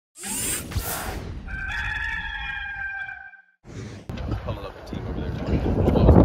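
A rooster crowing over a whooshing intro sting: one long held call that cuts off about three seconds in. After a short gap, a rush of wind noise on the microphone.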